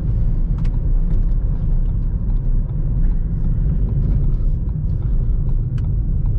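In-cabin engine and road noise of a 2013 Ford Fiesta with a 1.0 EcoBoost three-cylinder engine, driving along at a steady pace: an even low rumble.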